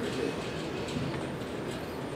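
Steady background hiss of room noise with no distinct event, in a gap between spoken sentences.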